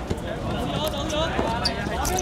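Footballers' voices calling out across a hard court, with a few sharp thuds of the ball striking the court or a boot.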